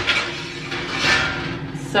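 Metal baking sheet sliding onto an oven rack, a rattling scrape that is loudest about a second in, over a steady low appliance hum.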